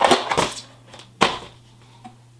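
Cardboard product box being torn open by hand: a short burst of ripping and crinkling in the first half second, then a single sharp snap a little over a second in.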